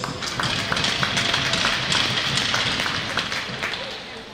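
Crowd applauding, a dense patter of many hands clapping that eases off slightly toward the end.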